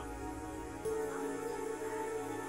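Soft background score music of steady held notes. A new sustained note comes in a little under a second in.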